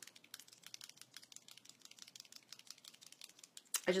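Faint, irregular small clicks and ticks from a LipSense liquid lip colour tube being shaken and handled, its applicator wand rattling in the tube, just before application.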